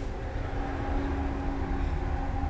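Steady low mechanical hum with a constant tone running through it.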